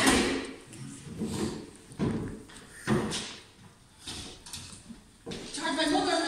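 A few knocks and thumps from actors moving about a stage set by a desk, with a brief voice near the end.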